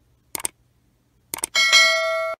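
Sound effects of a subscribe-button animation: two mouse clicks about a second apart, then a bell chime that rings on, the notification-bell sound.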